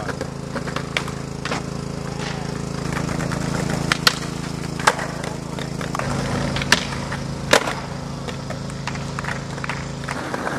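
Skateboard rolling on concrete, with several sharp clacks of the board striking the ground from about four seconds in. A steady low hum runs underneath.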